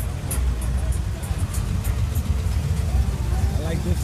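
Music with heavy bass mixed with a car engine running, and voices in the background.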